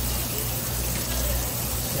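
Water from a hose spray head running steadily onto a flounder on a plastic cutting board, with a steady low hum underneath.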